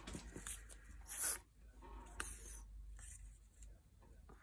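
Faint rustling and scraping of torn paper strips being handled and pressed down onto a sheet of paper, in a few short bursts, the loudest about a second in.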